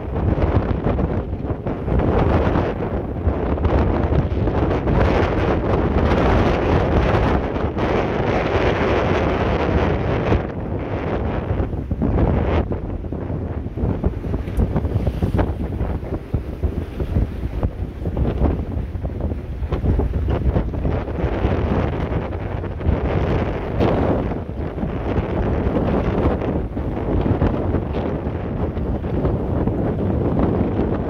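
Wind of 30 knots and more buffeting the microphone: a loud, rushing noise that swells and eases with the gusts.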